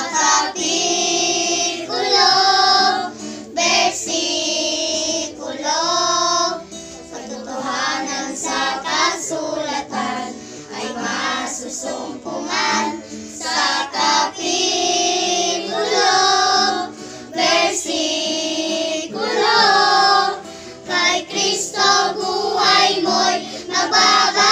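A group of children singing a Filipino religious song together, with an acoustic guitar accompanying them. The singing carries on without a break apart from short pauses between phrases.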